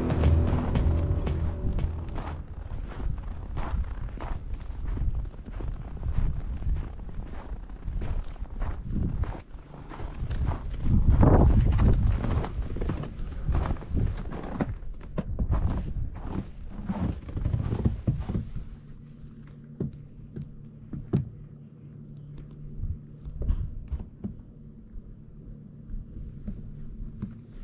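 Footsteps crunching through snow at an even walking pace, with a louder burst of noise about halfway through. Music fades out in the first couple of seconds, and in the last third a steady low hum sits under fewer, softer steps.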